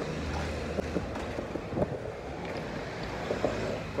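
Outdoor skatepark ambience: a steady low rumbling noise with wind on the microphone, and a few faint knocks scattered through it.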